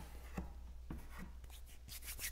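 A few faint, light scratches and taps of hands on cardstock and a cutting mat, over a steady low hum.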